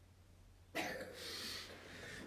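A person coughing: a sudden breathy burst about halfway through, lasting around a second.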